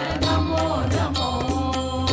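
Devotional intro music: a chanted vocal line over a steady low drone, with a few sharp percussive strikes.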